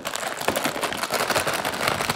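Plastic candy wrapper crinkling and crackling right against the microphone, a dense run of small crackles.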